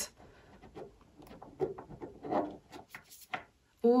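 Heart-shaped oracle cards being shuffled by hand: soft, scattered rustling and sliding of card stock in short bursts, stopping briefly near the end.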